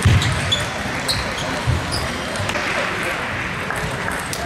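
A table tennis rally: the ball clicking sharply off the bats and table several times, with low thuds of the players' footwork on the floor, over a steady murmur of hall chatter.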